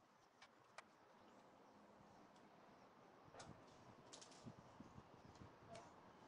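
Near silence with faint, scattered clicks and taps: a screwdriver and the plastic body shell of an Attacknid toy robot being handled during disassembly.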